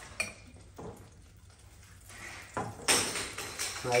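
Metal utensil clinking and scraping against a stainless-steel bowl and saucepan as butter is spooned into the pan, a few light clicks followed by a louder clatter about three seconds in.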